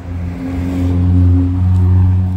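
A motor vehicle's engine running close by: a steady low hum that swells to its loudest about a second in and eases off near the end.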